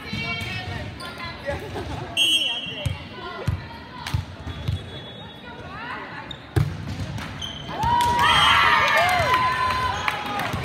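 Indoor volleyball rally: a short referee's whistle about two seconds in, then several sharp smacks of the ball being hit. Near the end, loud shouting and cheering from the players and spectators as the point ends.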